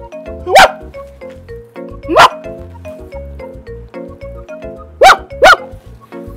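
Four loud dog barks, two spaced apart and then two in quick succession near the end, over background music.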